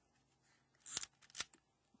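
Two sharp plastic clicks about half a second apart, with faint scraping between them, as the plastic body of a Kodak Pocket Instamatic 60 110 camera is handled and worked open.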